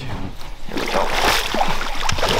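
A hooked chinook (king) salmon thrashing and splashing at the water's surface as it is scooped into a landing net, the splashing building up over the first second and then staying loud.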